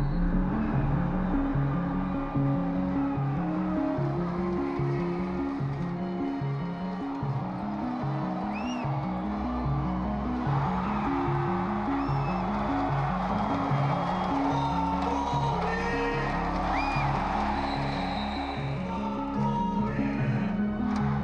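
Background music with a steady, repeating stepped bass line. From about halfway through, arena crowd noise rises underneath it.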